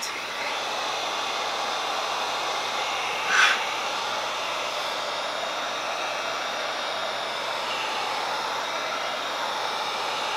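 Handheld electric heat gun blowing a steady rush of hot air onto a vinyl chassis wrap, with one brief louder burst about three and a half seconds in.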